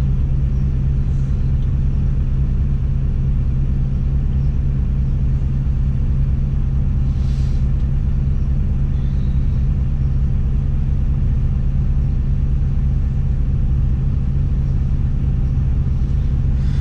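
Tadano all-terrain crane's diesel engine running steadily, heard from inside the operator's cab as an even low drone.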